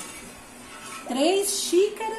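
A woman's voice from about a second in, after a quieter first second.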